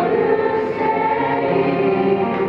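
Middle school choir of mixed girls' and boys' voices singing in sustained notes.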